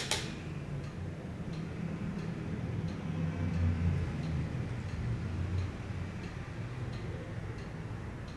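Low steady hum with faint, evenly spaced ticks about once a second.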